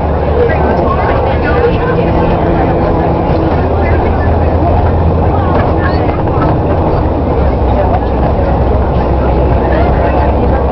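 Bus engine and road noise heard from inside the cabin: a steady low drone with a dense rumble over it, and indistinct voices of people talking underneath.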